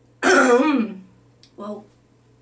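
A woman loudly clearing her throat, one falling voiced sound, followed about a second and a half in by a shorter, quieter one.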